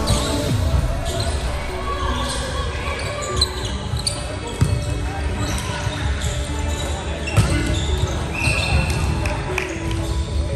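Indoor volleyball rally in a gymnasium: the ball is struck with a few sharp smacks, the loudest about four and a half and seven and a half seconds in, among players' voices, all echoing in the large hall.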